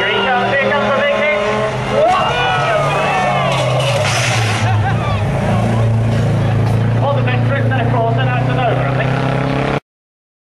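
Banger racing cars' engines running and revving on the track, a steady drone with rising and falling engine notes over it and a brief hiss about four seconds in. The sound cuts off suddenly just before the end.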